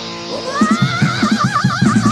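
Heavy metal band recording: after a held chord, a lead electric guitar slides up about half a second in and wavers in a wide, fast vibrato that sounds like a horse's whinny. Drums come in at the same moment with a driving beat.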